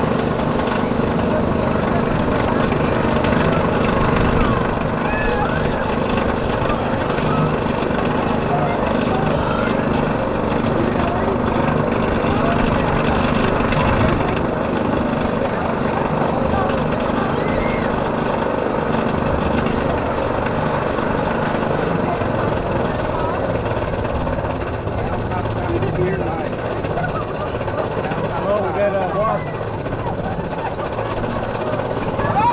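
Steel Eel roller coaster train climbing its chain lift hill: a steady mechanical clatter from the lift chain running under the cars, holding an even level throughout.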